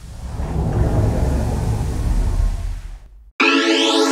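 Low rumbling whoosh of a logo-intro sound effect for about three seconds, cutting off suddenly. Near the end the instrumental beat starts with held, layered chords.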